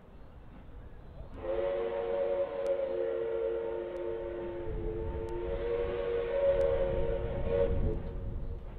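Steam locomotive chime whistle sounding one long blast of about six seconds, starting about a second and a half in, its chord wavering briefly midway. A low rumble builds underneath in the second half.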